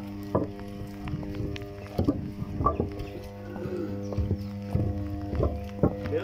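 Steady low electrical hum of an energised high-voltage substation, with several evenly spaced overtones, the hum of the power transformers' cores under voltage. Irregular footsteps crunch on the gravel yard over it.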